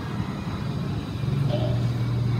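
A steady low rumble of background noise, growing louder a little after a second in.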